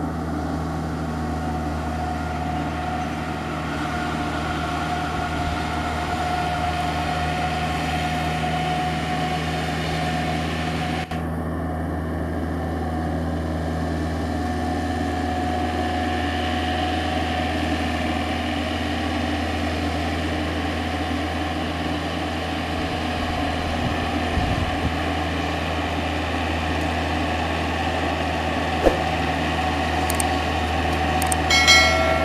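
Iseki compact tractor's diesel engine running steadily under load, with a constant low hum, while driving a rotary tiller through wet paddy soil.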